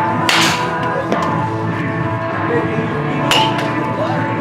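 Background music playing, with two sharp cracks of a bat hitting a pitched ball in batting practice, one just after the start and one near the end.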